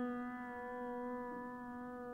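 A single electric piano note held and slowly fading, steady in pitch, with no new note struck.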